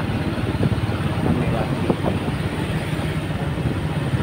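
Steady low rumble of engine and road noise from a moving vehicle, heard on board, with a few faint clicks.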